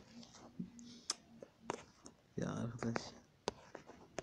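Taps on a tablet's touchscreen during drawing strokes: several short, sharp clicks at irregular intervals.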